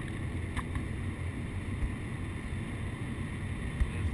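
Steady low rumble of engine and tyre noise inside an older Mercedes-Benz car cruising on a highway, with a brief click about half a second in.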